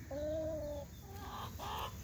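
A hen giving one drawn-out, steady call of under a second, followed by a few softer calls.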